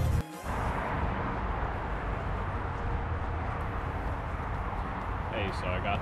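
Background music cuts off abruptly, followed by steady outdoor background noise with a low rumble; a man starts talking near the end.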